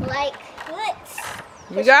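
Speech only: a high-pitched child's voice near the start, then a woman saying "you got it" near the end, with a faint steady background noise between.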